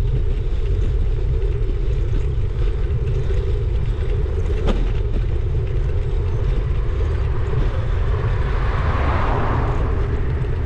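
Steady wind rumble on the microphone of a bike-mounted camera, with tyre noise from a bicycle rolling on tarmac. A single sharp click about halfway through, and a hiss swells near the end.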